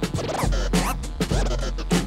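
Turntable scratching: a record on a Technics turntable pushed back and forth under the stylus, chopped into short rising and falling sweeps by the mixer's fader, over a hip hop beat.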